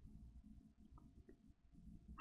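Near silence: room tone, with a faint low hum and two faint ticks about a second in.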